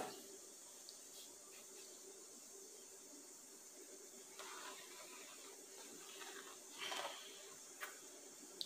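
Faint scraping and rustling of a fingertip drawing through a thin layer of cornmeal in a plastic tray, over quiet room tone, a little louder about halfway through, with a short soft rush near the end.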